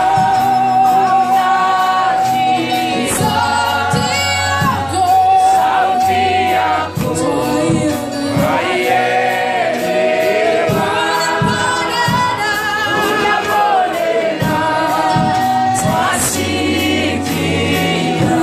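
Choir singing gospel music, with instrumental backing and a steady beat.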